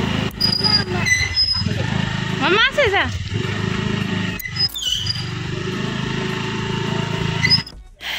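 Small motor scooter engine running steadily as the scooter rides slowly, with voices over it, including a high child's squeal about two and a half seconds in. The engine sound cuts off abruptly just before the end.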